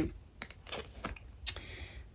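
Oracle cards being handled on a tabletop: a few light clicks and taps as a card is lifted and laid down, the sharpest about one and a half seconds in, followed by a soft brush of card on card.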